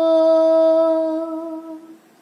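A woman's voice singing a lullaby unaccompanied, holding one long, steady note at the end of a 'jo' line, fading out near the end.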